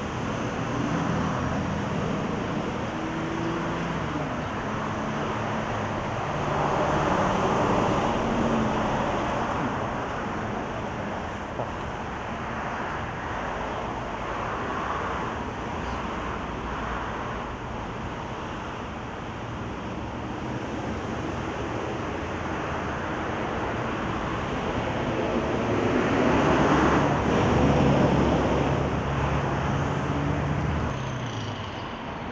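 Road traffic going by: a steady bed of road noise, with vehicles passing louder about seven seconds in and again near the end.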